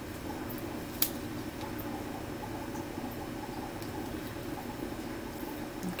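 Steady low room hum, with one sharp click about a second in.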